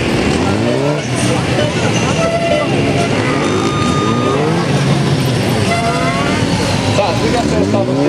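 2006 Honda CBR600RR inline-four sport bike revving up again and again, its pitch rising with each burst, as it launches and accelerates in short spurts between tight turns.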